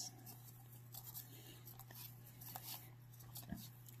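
Faint rustle and light ticks of glossy baseball cards being slid off a stack one by one in the hands, over a low steady hum.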